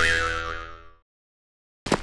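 Edited-in comic sound effect: a ringing, pitched tone with a quick downward swoop at its start that fades away within about a second, followed by dead silence.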